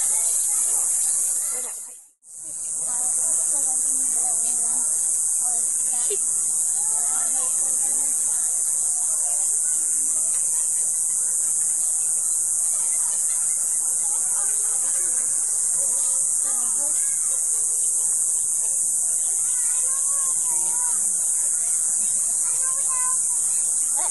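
A steady, high-pitched insect chorus drones without a break. The sound cuts out for a moment about two seconds in.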